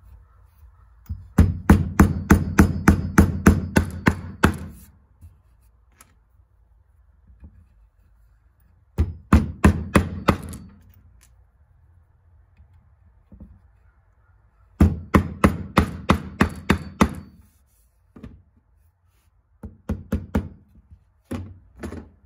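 Hammer driving 1½-inch nails through a wooden board into its wooden feet: four runs of quick blows, about four a second, with pauses between, the last run a few spaced taps.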